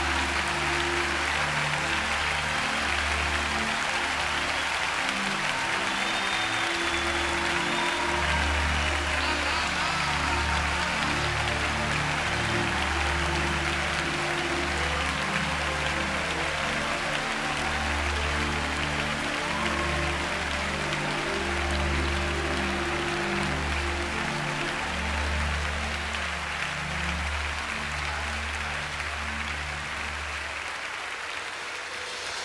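A large congregation applauding over a band holding sustained low chords. The applause grows fainter near the end.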